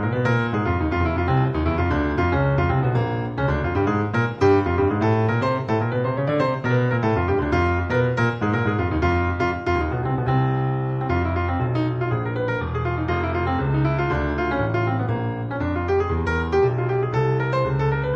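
Solo piano playing a continuous piece with many quick notes over a low bass line.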